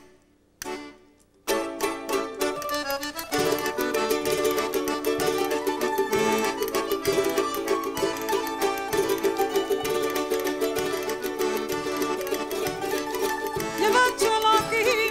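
A live ensemble of plucked strings (bandurria, guitarró and Venezuelan cuatro) plays the instrumental opening of a jota. It starts with a few separate strummed chords with short gaps between them, then settles into continuous fast plucking that grows fuller about three seconds in.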